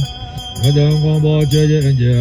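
Low-pitched voices chanting Tibetan Buddhist prayers to a steady drone-like recitation tone, with the chant breaking off briefly at the start and resuming about half a second in.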